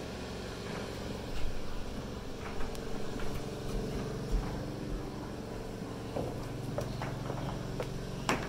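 A steady low mechanical hum, with scattered light knocks and taps of footsteps on an OSB subfloor; the loudest knock comes about one and a half seconds in.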